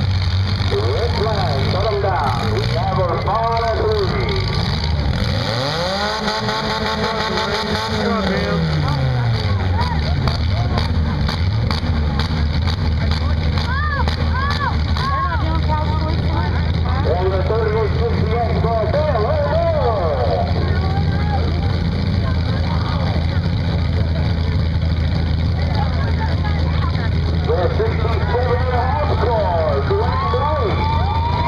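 Engines of battered compact demolition-derby cars running steadily, with one revving and then dropping away several seconds in. Indistinct voices run over it.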